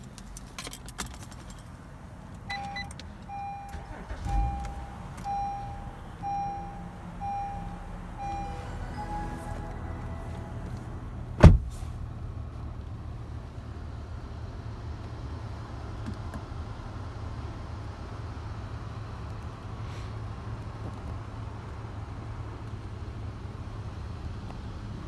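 Acura RLX cabin warning chime beeping about once a second for several seconds, then a different short chime. A single sharp thump about eleven seconds in, then the 3.5-litre V6 idling with a steady low hum heard inside the cabin.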